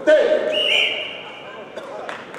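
A loud shout rings out in a large sports hall just after the start, then fades into quieter hall noise.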